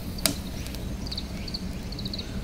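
Firewood burning in a OneTigris Tiger Roar camping wood stove: one sharp crackle about a quarter of a second in, over a low steady rumble, as the wood catches.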